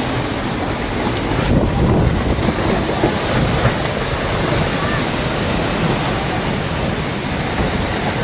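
Strong gusty storm wind blowing hard across the microphone, a steady rushing noise that swells in gusts.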